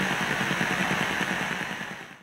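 A steady, rough low rumble with hiss, fading out near the end.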